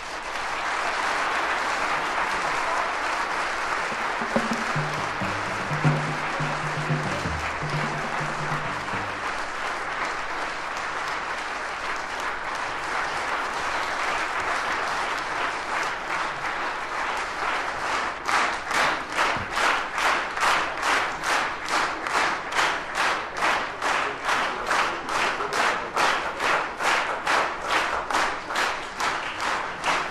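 Live concert audience applauding, transferred from a vinyl record. A few low notes sound under it about five seconds in, and about eighteen seconds in the applause turns into rhythmic clapping in unison, about two claps a second, which stops near the end.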